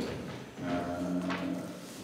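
A man's voice holding a drawn-out, even-pitched hesitation sound, an "ehh" lasting about a second, before speaking.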